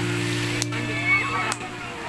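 Faint voices over a steady low hum of held tones, which stops just before the end.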